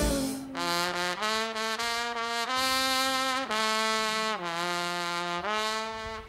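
Full brass band drops out and a lone trumpet plays an unaccompanied phrase of about seven sustained notes, each separated by a brief break, moving a little up and down in pitch.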